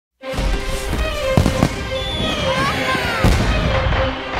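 Fireworks bursting and whistling over a festive crowd, with music underneath. The sound cuts in suddenly just after the start, with a few sharp bangs, two close together about one and a half seconds in and another just after three seconds, and rising and falling whistles between them.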